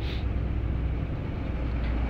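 Steady low background rumble and hum, with no distinct events.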